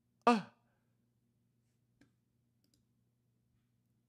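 A brief spoken "uh oh", then near silence over a faint steady low hum, with a single faint computer-mouse click about two seconds in.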